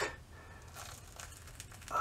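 Adhesive bandage being peeled off the skin: faint crinkling with a few scattered soft crackles.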